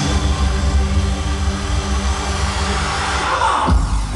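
Loud electronic dance music from a DJ set, played over a club PA, with a heavy steady bass. Near the end a falling sweep comes in, the bass drops out briefly and then returns.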